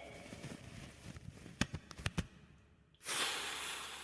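Sound effects of a staged attack: a quick run of sharp cracks, like small pops or shots, about halfway through, then a sudden hissing burst about three seconds in that fades away.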